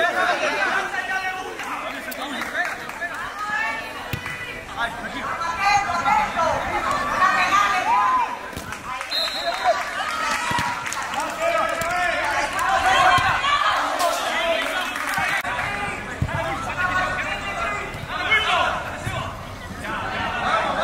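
Several voices calling out and talking over one another during a soccer match: players on the pitch and people around it.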